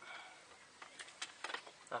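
Quiet, light clicks and ticks of an engine-oil dipstick being slid back down its guide tube: about half a dozen short taps in the second half.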